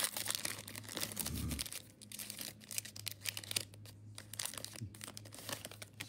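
Foil trading-card pack wrappers being torn open and crinkled by hand: a rapid run of crackling and rustling, busiest in the first couple of seconds and thinning out after.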